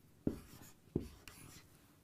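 Dry-erase marker writing two digits on a whiteboard. The tip strikes the board twice, about two-thirds of a second apart, and each strike is followed by a faint, short stroke.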